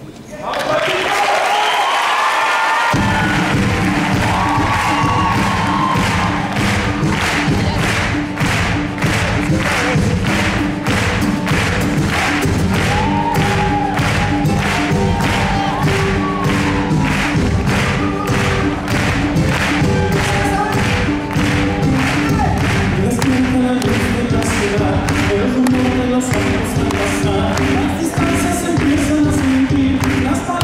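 Live folk-pop band starting a song: a melody over sustained chords, then about three seconds in the bass and drums come in with a steady beat.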